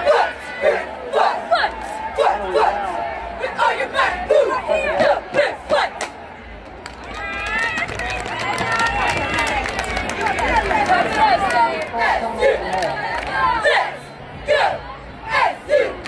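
A cheerleading squad chanting a cheer together, several voices at once, punctuated by sharp hand claps that are densest near the start and near the end.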